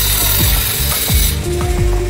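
Manual tile cutter's scoring wheel scraping across a wall tile in one continuous stroke, stopping a little past halfway. Background music with a steady beat plays underneath.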